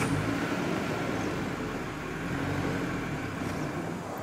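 A motor vehicle's engine running steadily: a low hum under a wash of noise.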